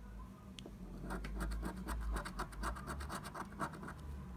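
A coin scratching the scratch-off coating of a paper scratch card, starting about a second in: quick back-and-forth rasping strokes, about six a second.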